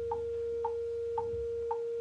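Metronome clicking evenly about twice a second over a steady electronic drone tone held on one pitch, the practice click and drone set up for playing bass exercises against.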